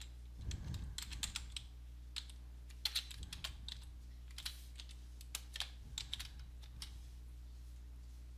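Typing on a computer keyboard: scattered key clicks in irregular bunches, over a faint steady low hum.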